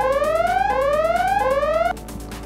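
A repeating electronic tone that glides up in pitch and drops back, about three rising sweeps a little under a second apart, cutting off just before the end.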